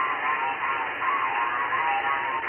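Single-sideband receiver audio from the RS-44 amateur satellite's transponder: thin, band-limited radio sound with garbled, off-tune voices warbling up and down in pitch over hiss.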